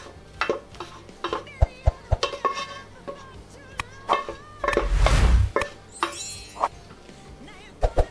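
Utensil scraping and knocking against a cooking pot as curry is emptied out onto a plate of rice, with a louder bump about five seconds in. Background music plays throughout.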